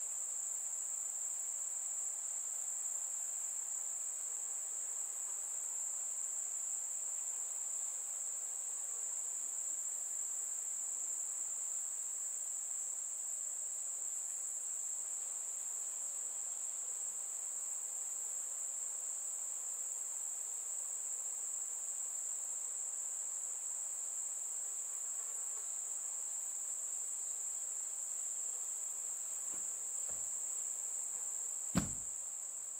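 Crickets trilling in one steady, unbroken high-pitched drone.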